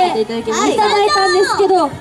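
Young girls talking into handheld microphones.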